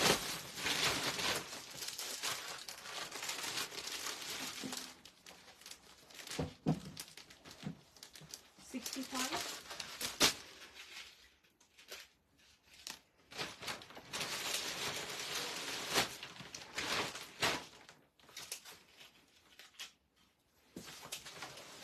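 Clear plastic wrapping crinkling and a silk saree rustling as it is unwrapped and handled. The rustling comes in bursts, with a spell near the start and another about two-thirds through.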